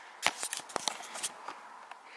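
A quick run of light clicks and scrapes as a small wooden hatch panel is handled and set into its opening at the bottom of a cabinet. The clicks fall in the first second or so, then the handling goes quiet.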